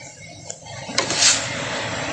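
Passing road traffic outside. Its noise comes in sharply about a second in and carries on steadily.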